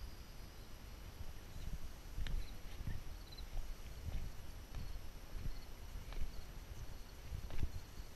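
Footsteps on wooden deck boards and boardwalk: a person walking, each step a dull thud.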